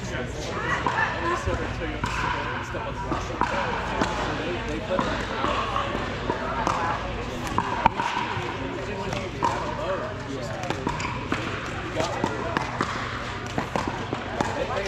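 Pickleball paddles hitting a hollow plastic ball in sharp pops, irregular and frequent, from this and nearby courts, over a steady babble of voices.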